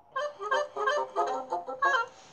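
Animated cartoon characters babbling in nonsense voices, a quick run of about seven short, honking, pitched syllables.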